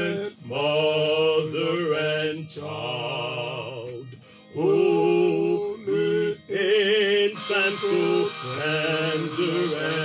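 Music: a singing voice holding wavering, drawn-out notes over a steady low accompaniment, with a brief break about four seconds in.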